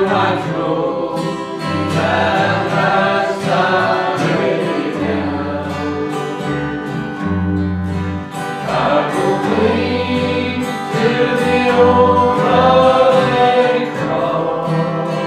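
A gospel song sung over an acoustic guitar, the guitar's bass notes changing under the sung melody.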